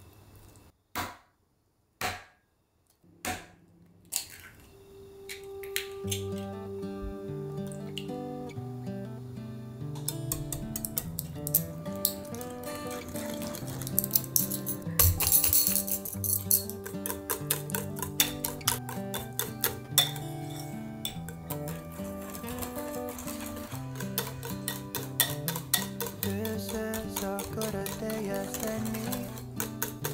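Wire whisk beating batter in a glass bowl, a rapid run of clinks against the glass, over background music that comes in about five seconds in. A few separate knocks of a spatula on the bowl come first.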